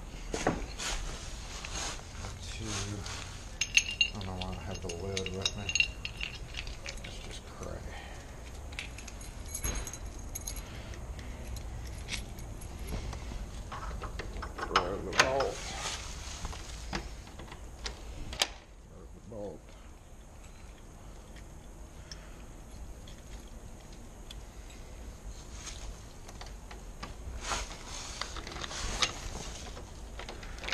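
A ring of keys jangling, with scattered clicks and knocks of door-lock hardware being handled; quieter from about 18 seconds in.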